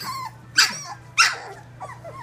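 Three-week-old Labrador puppy giving two short, loud, high cries about two thirds of a second apart, with softer little puppy noises around them.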